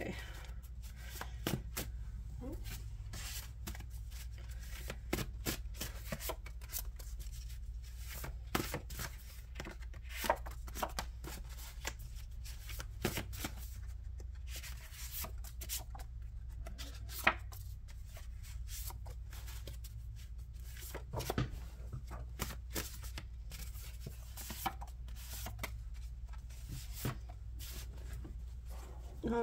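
A deck of index cards being shuffled and handled by hand: irregular flicks, taps and slides of card stock, with several cards falling loose onto the spread on the table. A steady low hum sits underneath.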